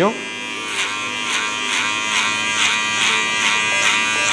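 Electric hair clippers fitted with a 6 mm guard comb buzzing steadily while cutting up the back of the head, with a rasp about four times a second as the blade passes through the hair.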